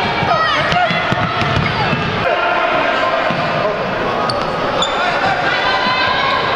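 A futsal ball being kicked and bouncing on the hard court of an indoor sports hall, under continual shouting from children and spectators.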